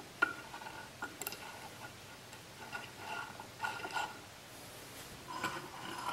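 Teflon pulley turning on a bare threaded bolt and meshing with a timing belt as the lathe carriage is moved, giving faint, irregular ticks and short squeaks. It is a little noisy because it runs without bearings.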